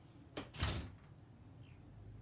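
A short sharp click, then a moment later a louder knock with a low thump, as something is handled or shut off camera.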